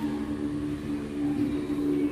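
A steady low hum with a faint, constant pitch.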